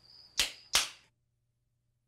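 Two sharp hits about a third of a second apart, each dying away quickly, followed by dead silence.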